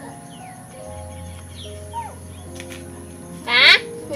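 Background music with held notes and faint high chirps. About three and a half seconds in comes a short, loud squeal that falls in pitch: a baby macaque begging for a sweet held above her.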